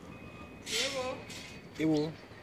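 Quiet speech: two short murmured utterances from a man's voice, about a second apart, with no other distinct sound.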